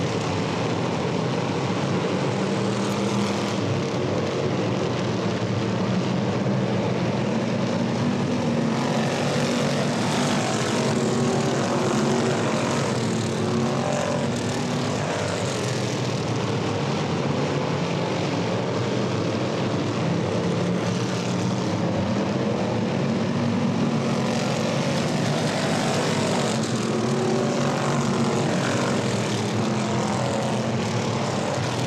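Engines of several vintage-bodied dirt-track race cars running hard at racing speed, a steady loud drone whose notes rise and fall as the cars come around and pass.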